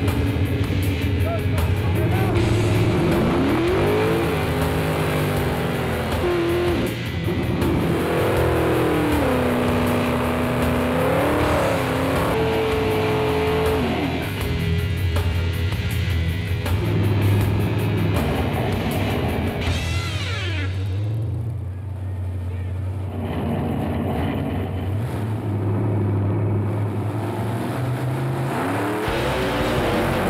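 Nitrous V8 drag cars revving up and down on the line and then launching and running down the strip, mixed with background music.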